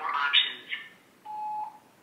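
A phone voicemail greeting ends, heard thin through the handset's speaker, then a single short steady beep about a second and a quarter in, the signal that the voicemail has started recording.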